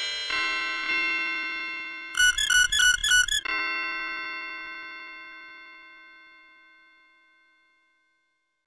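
Logo jingle with bell-like sustained chords, then a quick flurry of short chiming notes from about two seconds in. A last chord rings on and slowly dies away, fading out before the end.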